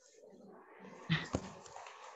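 Faint room noise picked up by a video-call microphone, with a short low thump about a second in and a sharp click just after it.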